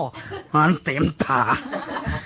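A man's voice preaching in Northern Thai, with chuckling mixed into the speech.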